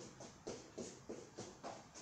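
Quick light footsteps and taps of sneakers on a floor mat during a shuffle footwork drill, about three to four a second in an uneven rhythm.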